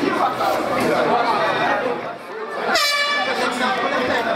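Spectators shouting and talking around an MMA cage, then, almost three seconds in, a short, bright air-horn blast lasting about half a second.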